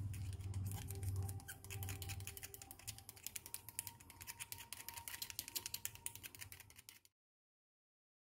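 Small metal spoon stirring a magnesium oxide and water mix in a small plastic cup, a rapid run of light clicks and scrapes as it knocks against the cup. It cuts off abruptly about seven seconds in.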